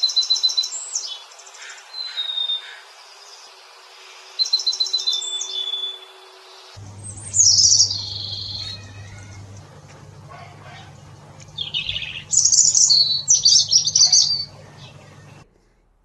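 Birdsong from two birds in turn: a small streaked songbird singing short phrases of quick high trills and whistles, then, about seven seconds in, a European robin singing high, warbling phrases that come in a dense run near the end.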